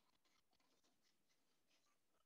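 Near silence, with faint short scratching and rubbing on paper from drawing or erasing.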